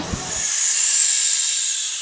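A high, hissing whoosh: an editing sound effect for a video transition. It swells about half a second in, then slowly fades away.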